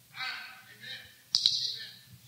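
A faint, indistinct voice, then about halfway through a sharp click followed by a short hiss that fades away.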